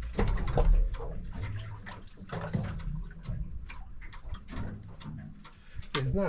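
Sea water lapping and slapping against the hull of a small boat in irregular splashes, over a low rumble.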